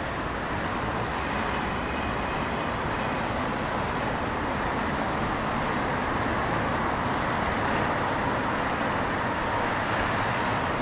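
Steady traffic noise from a busy multi-lane city road: cars and buses running past.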